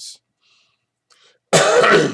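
A man coughs once, loudly, about one and a half seconds in, after a short silent pause.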